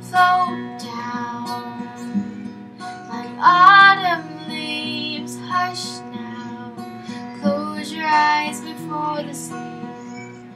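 Solo acoustic guitar, capoed, played under a woman's singing voice, with two sung phrases rising out of it about three and a half seconds in and again around eight seconds in.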